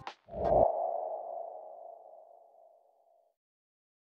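Outro logo sound effect: a short low thud about a third of a second in, then a single ringing tone that fades away over about three seconds.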